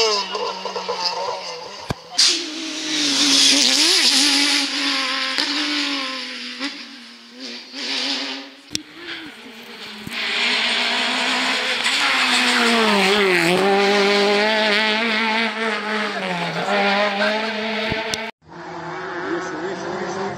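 Rally car engines revving hard: one car accelerating away, then another coming through a bend, the engine pitch climbing and dropping again and again with gear changes and braking. There is a sharp bang about two seconds in, and the sound breaks off abruptly near the end before another engine picks up.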